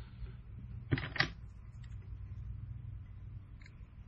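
Two short sharp clicks about a quarter second apart, about a second in, from scissors and materials being handled at a fly-tying bench, over a steady low hum.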